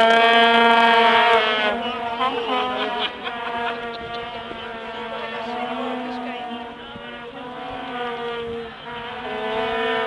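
Vuvuzelas blown by football supporters: a loud, steady held note with a second horn overlapping. After about two seconds it drops to a quieter mix of several horns on slightly different pitches, then swells again near the end.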